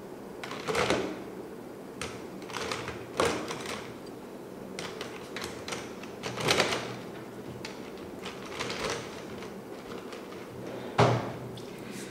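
Plastic pens scraping and rattling against each other and a clear plastic canister as they are drawn out of it and slid back in, in several separate strokes. A sharp knock comes near the end.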